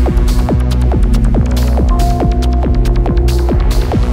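Electronic techno track: a throbbing bass drone under a short synth note that falls in pitch and repeats about three times a second, with hi-hat-like ticks above.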